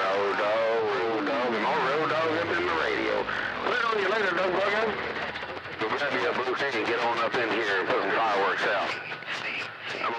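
CB radio receiver playing long-distance skip: several distant stations talking over one another, garbled and warbling so no words come through, with a tone sliding steadily down in pitch over the first three seconds or so.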